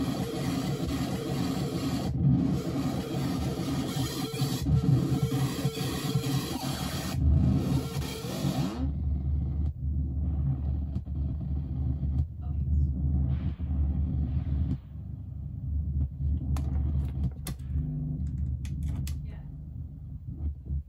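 Electronic noise from a modular synthesizer run through a Big Muff fuzz pedal: a dense, distorted wall of noise that briefly drops out twice, then cuts off about nine seconds in, leaving a low, droning rumble. Scattered clicks and crackles come near the end as patch cables are handled.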